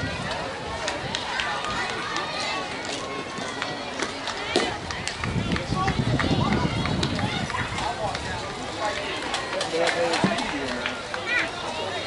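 Spectators talking and calling out around a softball field, with a sharp crack about four and a half seconds in, fitting a bat hitting the softball. The voices then grow louder for a couple of seconds.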